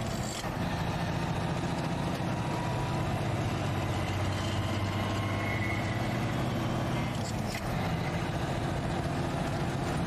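Truck engine running steadily while driving, a continuous low hum with road noise, briefly dipping about half a second in and again around seven seconds in.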